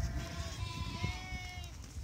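Several sheep in a tightly packed flock bleating, their long, wavering calls overlapping one another.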